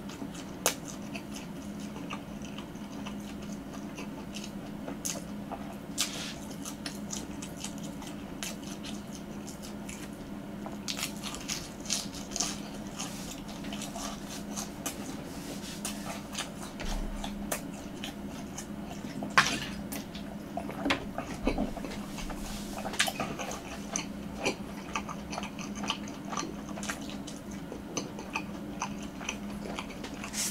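Close-miked chewing of a breaded twisted-dough (kkwabaegi) hotdog, with irregular crunchy clicks and wet mouth sounds as the bites are worked through.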